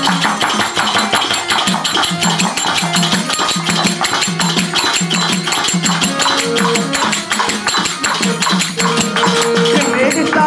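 Devotional bhajan music: a harmonium playing over fast, even jingling percussion and steady low drum strokes.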